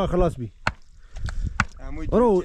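Two sharp knocks about a second apart, with a few lighter taps between them: a hammer striking a wooden tree stake to drive it into the ground.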